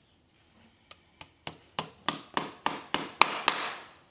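Farrier's driving hammer nailing on a horseshoe, driving a nail through the shoe into the hoof wall: about ten quick blows, roughly three a second, growing louder, the last ringing out briefly.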